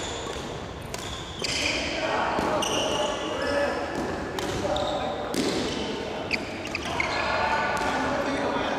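Badminton doubles rally: rackets strike the shuttlecock with sharp, irregular cracks while shoes squeak on the wooden gym floor, with players' voices in between, all echoing in a large hall.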